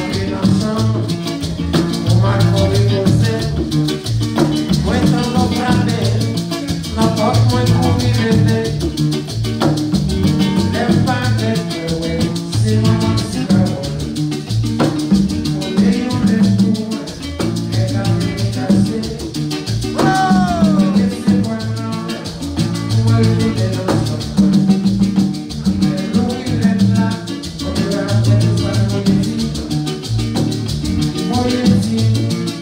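Live Haitian twoubadou music: an acoustic guitar strummed over a rhythmic bass line, with maracas shaking and a man singing.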